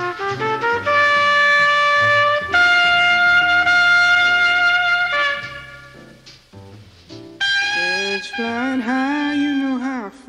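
Jazz recording led by a trumpet playing long held notes, loudest through the first half. It thins out and drops in level past the middle, and a new phrase with wavering, bending pitch comes in near the end.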